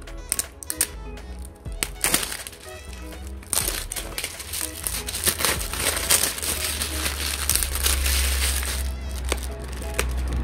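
Background music over sharp clicks and crinkly rustling from an o-ring assortment kit being opened and handled. The rustling is densest in the middle of the stretch.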